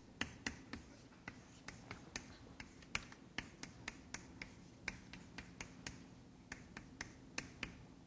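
Chalk writing on a blackboard: a run of faint, sharp taps, several each second, as the chalk strikes and lifts from the board.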